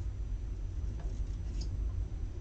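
Small craft scissors snipping a paper die-cut piece: two faint snips, about a second in and again half a second later, over a steady low hum.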